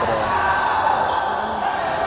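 Futsal play on an indoor wooden court: ball touches on the parquet and players' calls, echoing in the sports hall.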